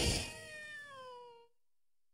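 A cartoon cat's long meow, one drawn-out cry that falls in pitch and fades out about one and a half seconds in.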